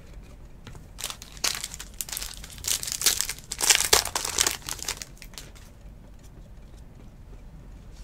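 Foil wrapper of a trading-card pack crinkling and tearing as it is ripped open by hand, in a few seconds of rustling bursts loudest around the middle, followed by a few faint clicks as the cards are handled.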